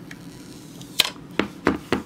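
Glass screen protector coming off a phone screen and being handled on a wooden desk: a few sharp clicks of glass in the second half.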